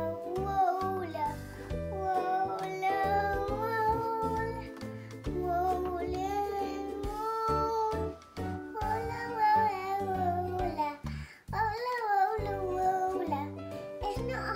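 Background music: a song with a high sung melody over a steady bass line.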